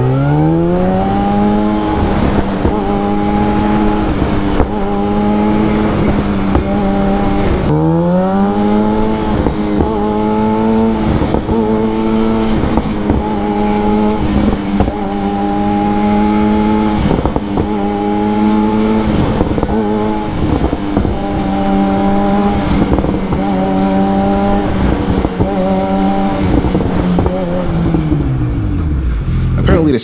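Yamaha FZ1's inline-four engine held at mid-to-high revs while riding, the throttle repeatedly snapped shut and cracked open again, with a bang each time the power comes back in. The rider suspects the bang is a by-product of the fuel injection cutting the injectors completely on closed throttle. Revs climb at the start, drop and climb again about eight seconds in, and fall away near the end.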